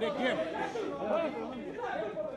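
Several voices talking and calling out over one another, with no other sound standing out.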